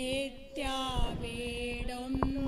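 A slow hymn sung in a chant-like style, voices holding long, steady notes, with a short break about half a second in before the singing resumes.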